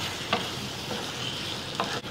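Wooden spatula stirring country chicken pieces in masala in a clay pot, over a steady frying sizzle. The spatula knocks sharply against the pot twice, about a third of a second in and near the end.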